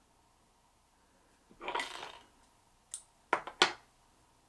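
Small handling sounds at a fly-tying vise: a brief rustle, then a quick run of four sharp clicks near the end.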